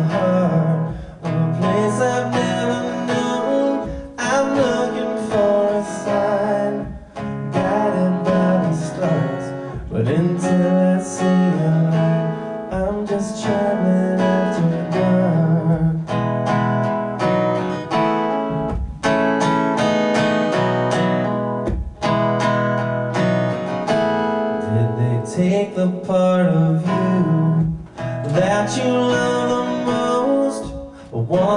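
Solo acoustic guitar strumming chords at a steady, even pace, playing the opening of a slow folk-rock song.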